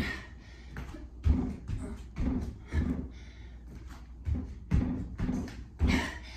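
Sneakers landing and pushing off on a yoga mat over a tile floor during a fast jumping exercise: a run of short, dull thuds, about one every half second to second and unevenly spaced.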